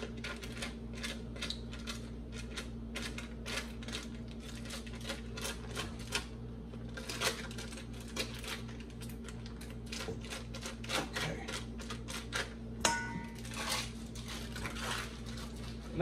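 Foil cream cheese wrapper crinkling while a silicone spatula scrapes and taps the cream cheese into a stainless steel mixing bowl: a steady run of small clicks and rustles, with one sharper ringing tap on the bowl near the end. A low steady hum runs underneath.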